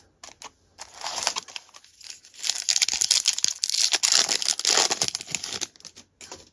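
Crinkling wrapper of a Topps Stadium Club trading-card pack, taken from the box and torn open. A short rustle comes about a second in, then a louder crackling tear and crumple of the wrapper lasting about three seconds.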